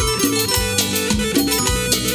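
Peruvian cumbia band music in an instrumental passage between sung lines: percussion keeping a steady beat under bass and melody instruments.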